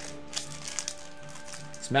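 Foil booster-pack wrapper crinkling as it is torn open by hand, with a few small crackles, over steady background music.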